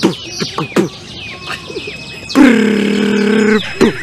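Beatboxing into cupped hands: a run of quick downward-swooping chirps and clicks, then a loud held humming note lasting about a second near the middle.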